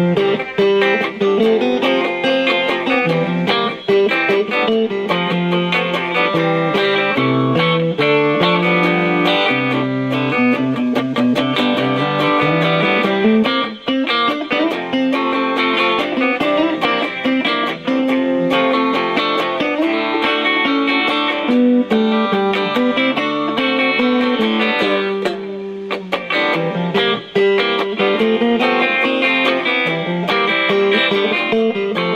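Two electric guitars playing a song together without a break: changing notes and chords throughout.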